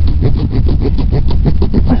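A small folding pruning saw cutting through a tree root in quick, short back-and-forth rasping strokes, with a steady low rumble underneath.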